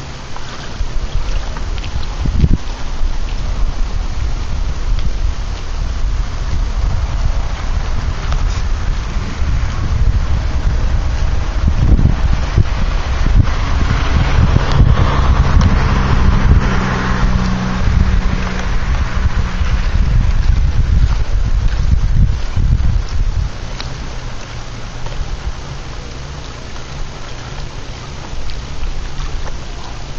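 Wind buffeting the microphone: a heavy, gusty rumble that swells after about a second, is strongest in the middle and eases toward the end.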